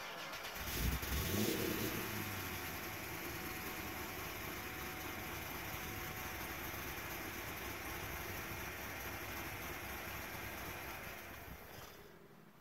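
2009 Corvette Z06's 7.0-litre LS7 V8 starting, flaring up briefly about a second in, then idling steadily before it is switched off near the end.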